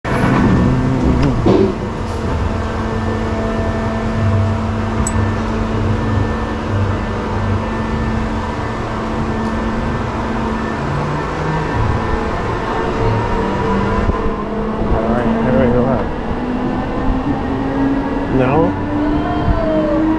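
Drive machinery of a spinning swing-glider amusement ride humming steadily, with a knock about a second and a half in. Over the last several seconds its pitch climbs slowly as the ride gathers speed.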